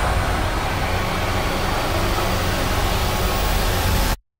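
Trailer sound-design drone: a loud, dense low rumble with hiss spread across the whole range, held at an even level.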